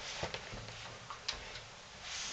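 A few faint, irregular taps and clicks from a toddler's hands on a mirrored sliding closet door.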